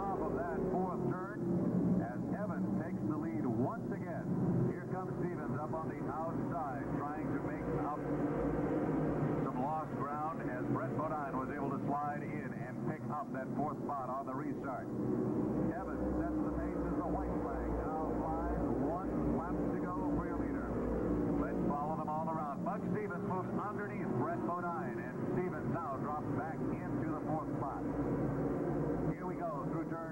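A pack of modified stock cars racing on a short oval, their V8 engines at full throttle. The pitch of many engines swells and falls continuously as the cars pass and go through the turns.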